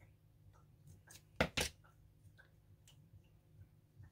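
Scissors snipping through an artificial succulent's stems: two sharp clicks close together about a second and a half in, with a few fainter ticks around them.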